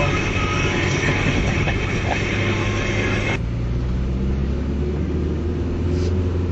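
Car cabin noise on the move: a steady low engine and road drone with a louder rushing noise over it, which cuts off abruptly a little past halfway and leaves the low drone on its own.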